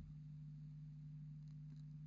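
Near silence with a faint steady low hum.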